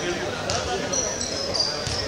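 A basketball bouncing on the court, two sharp knocks, with short high squeaks and crowd voices echoing in a sports hall.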